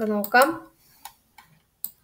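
A man's voice for a moment, then a few short, light clicks of a computer mouse as a browser tab is switched.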